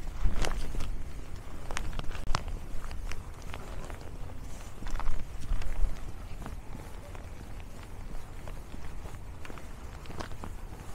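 Footsteps crunching on a packed snowy, icy trail at a walking pace, sharp crunches every half second to a second. Low rumbles on the microphone are loudest about half a second in and again around five to six seconds.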